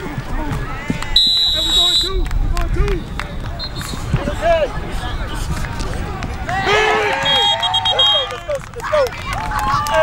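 Players and spectators shouting and calling out on a football field, overlapping voices without clear words. Two short, shrill whistle blasts cut through, one just after a second in and a broken, trilling one about seven seconds in.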